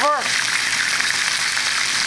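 Chicken pieces frying in hot oil in a pan, a steady sizzle as they brown and are turned over.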